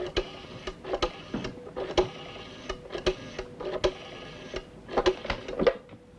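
A telephone being dialled: a run of mechanical clicks and whirring through several digits, with a faint steady tone underneath.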